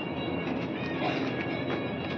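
Steady machine noise with several faint high-pitched whines held at a constant pitch, typical of a cold store's refrigeration fans and compressors running.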